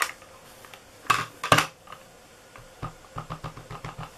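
A Stampin' Up ink pad and a clear acrylic stamp block being handled: two sharp plastic clicks about a second in, then a run of light taps near the end as the stamp is inked on the pad.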